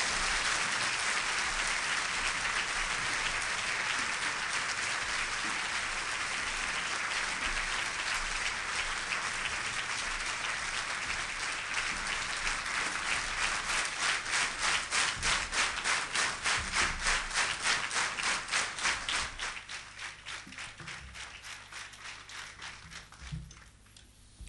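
Audience applauding a performer's entrance. About halfway through, the applause turns into rhythmic clapping in unison at roughly three claps a second, then fades away in its last few seconds.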